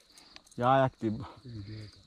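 An insect trilling steadily at a high pitch, under a man's few spoken words.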